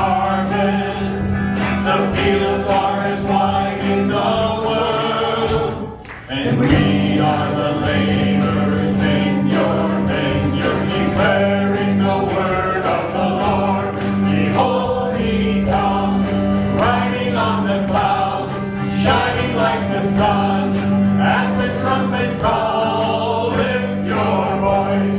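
A small church worship team of men and women singing a gospel hymn together into microphones over a steady instrumental backing, with a brief pause about six seconds in.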